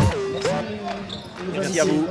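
Segment intro jingle: produced music with bouncing-ball thumps and gliding synth sounds, dying down over the two seconds.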